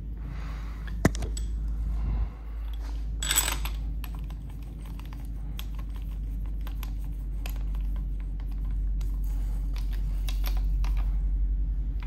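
Metal sockets and a socket extension clinking and clicking as they are handled and fitted onto the crankshaft bolt of a bare engine block, with a sharp click about a second in and a short rattle at about three and a half seconds, over a steady low hum.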